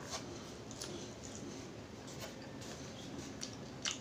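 Faint, scattered crackles and small clicks of crisp fried milkfish being picked apart by hand and eaten, with a slightly louder click near the end.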